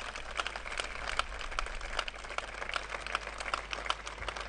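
Audience applauding, many hands clapping at once, steady throughout with a few sharper single claps standing out.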